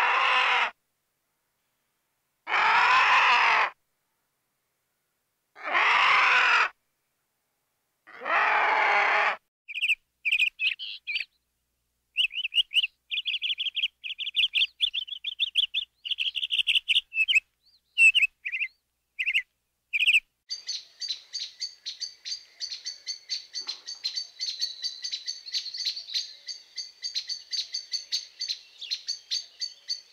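A vulture gives four harsh calls of about a second each, spaced a few seconds apart. Then short high bird chirps follow in quick bursts, and from about two-thirds of the way through a hummingbird's very high, rapid twittering takes over.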